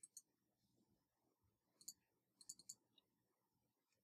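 Faint clicks from a computer mouse and keyboard: a quick double click right at the start, then two clicks just before two seconds in and a quick run of four about half a second later.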